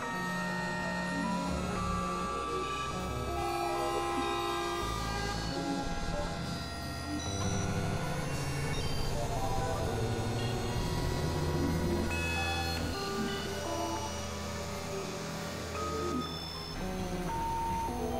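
Experimental electronic synthesizer music: overlapping held tones at shifting pitches enter and drop out over a low drone, with no steady beat.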